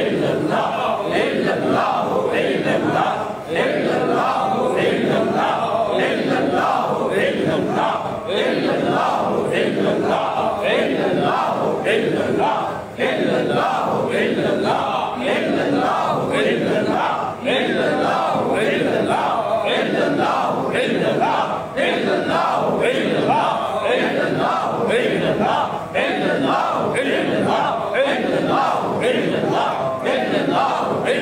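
A group of male voices chanting zikr in unison, repeating a short phrase in a steady, driving rhythm of short strokes.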